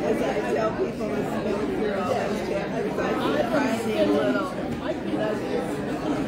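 Many people talking at once in a large room: a steady, indistinct hubbub of overlapping conversations with no single voice standing out.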